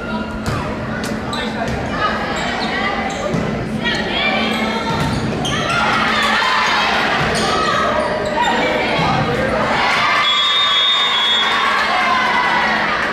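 Volleyball rally in a reverberant gym: sharp hits on the ball, sneakers squeaking on the hardwood, and players calling and shouting. Near the end comes a short, steady, high whistle tone, and the players' voices rise as the point is won.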